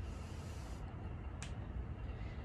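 Quiet background noise: a steady low rumble, with one short, high hiss about halfway through.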